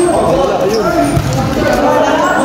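Several voices calling out over one another during a volleyball rally, with a dull thump of the ball being struck about a second in.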